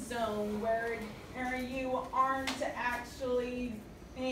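A female voice speaking, with one sharp smack, like a hand clap, about two and a half seconds in.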